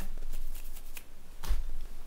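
Rustling and small clicks of a person moving close to the recording device, with a dull bump on the microphone about one and a half seconds in.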